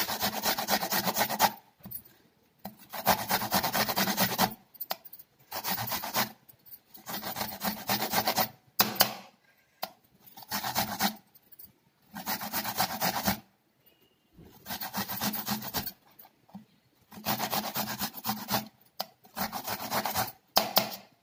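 Ginger root rubbed against a small stainless-steel hand grater: repeated runs of quick rasping strokes, each a second or two long, with short pauses between them.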